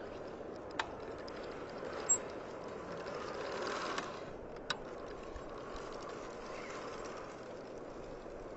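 Haibike electric mountain bike rolling across grass on its back wheel, a faint steady tyre rumble with a few short sharp clicks.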